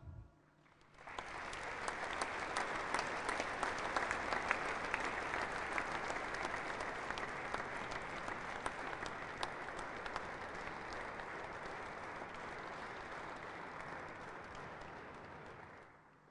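Audience applauding steadily: many hands clapping together. It starts about a second in, slowly fades, then cuts off abruptly just before the end.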